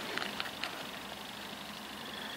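Quiet, steady outdoor background hiss with a few faint small ticks in the first second.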